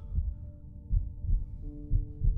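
Film soundtrack: a low heartbeat-like double thump, repeating about once a second, under sustained synthesizer chords that shift to new notes near the end.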